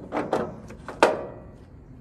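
Metal fuel cap being put back on and screwed down on a semi truck's aluminium diesel tank: a run of sharp metallic clicks and clinks, the loudest about a second in.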